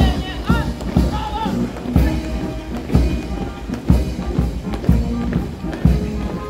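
A military march plays with a strong beat about once a second. In time with it, the boots of a column of soldiers marching in parade step strike the paving stones.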